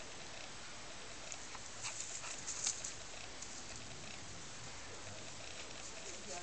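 Tibetan spaniel and Neva Masquerade cat play-fighting on grass: a brief flurry of short scuffling clicks and rustles between about one and three seconds in, over a steady background hiss.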